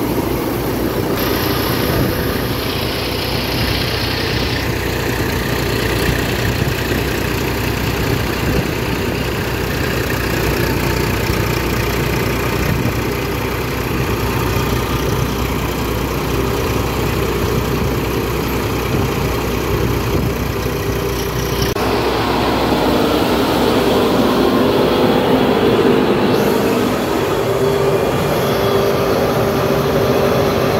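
Tractor engine running steadily under load, driving a thresher that is threshing pearl millet heads. The tone shifts abruptly a few times.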